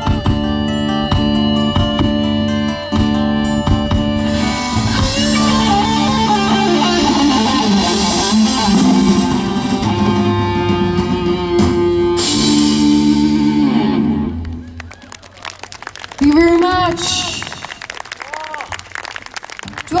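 Live rock band, with electric guitars, acoustic guitar and drum kit, playing the end of a song; the music stops about fourteen and a half seconds in. A man's voice speaks over the PA near the end.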